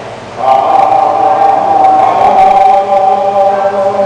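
A voice singing long, drawn-out held notes, coming in about half a second in, with a brief dip in loudness near the end.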